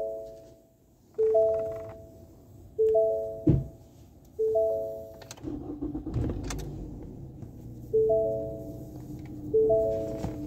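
A Ford car's dashboard warning chime repeating, a ding-dong of two or three notes about every second and a half, pausing for a few seconds midway before starting again. A thump comes about three and a half seconds in and another during the pause, and a steady low hum sets in about halfway through.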